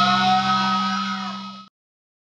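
A rock band's music ringing out: a steady low held note with higher tones sliding up and down over it. It fades and then cuts off abruptly near the end.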